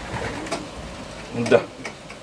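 Racing pigeons cooing faintly in the loft, a low soft sound under a short spoken word near the end.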